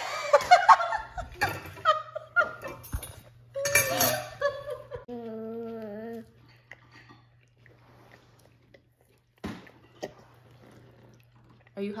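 Laughter and voices, then a short steady hummed 'mmm' from a toddler eating turkey, followed by quieter eating with a single sharp clink near the end, over a low steady hum.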